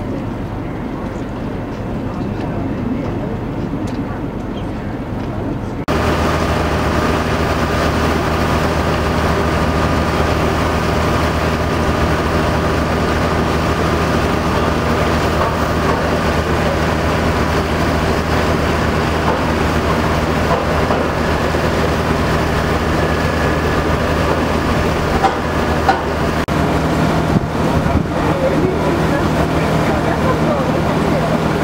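Steady engine drone with a low hum and several steady tones above it; a quieter hum gives way abruptly to the louder drone about six seconds in.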